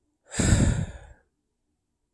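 A man's single heavy sigh, under a second long, loudest at the start and trailing off.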